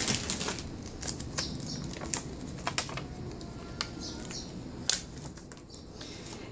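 Sheet of clear stamps on its plastic backing being handled on a desk: scattered small sharp plastic clicks and crinkles.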